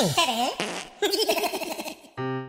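Comic sound-effect sting of a channel logo ident: a wobbling, sliding pitch, a short hiss about half a second in, then a fast wavering warble that stops just before the next song's music.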